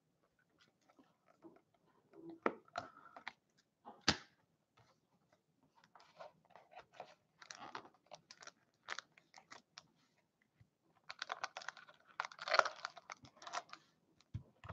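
A cardboard trading-card box being opened by hand and its wrapped packs handled: faint scattered taps and scrapes, then a denser spell of crinkling about eleven seconds in as a foil pack is pulled out.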